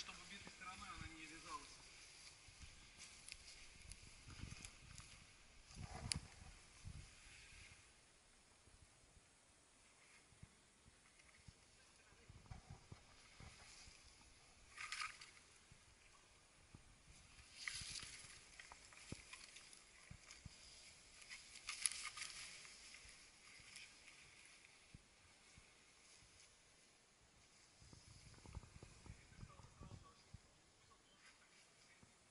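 Near silence outdoors, broken by a soft click and a few brief, faint hissing rustles.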